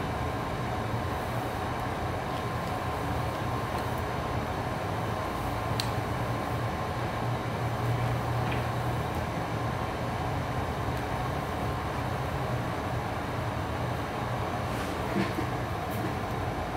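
Steady low hum and rushing noise of a wall-mounted air conditioner.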